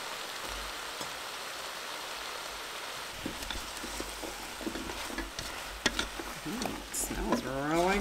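A black spatula stirring and scraping through chunks of raw potato, carrot, onion and green beans with seared beef in a cooker's inner pot: irregular knocks and scrapes starting about three seconds in, over a steady hiss. A short spoken word near the end.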